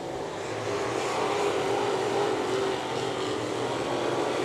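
Sportsman late-model dirt race cars' engines running hard around the oval, a steady, slightly wavering engine drone over road-like noise.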